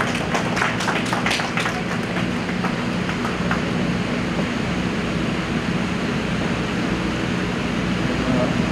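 A small audience clapping, scattered applause that dies away about two seconds in, leaving a steady low hum of background noise.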